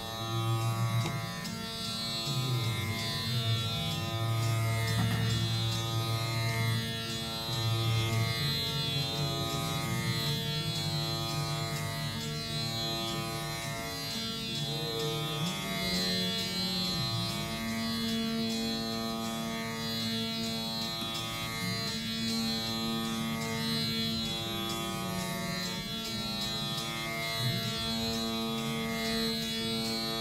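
Dhrupad performance of Raga Malkauns: a rudra veena plays long, low held notes with slow slides in pitch over a steady drone.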